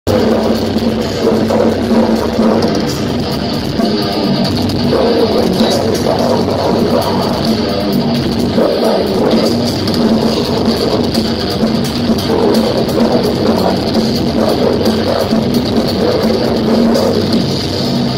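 Death metal band playing its opening number live over a festival PA, with heavy distorted guitars, bass and drums, heard from the crowd.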